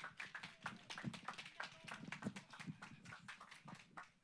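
Faint, scattered handclaps from a few people, irregular and several a second.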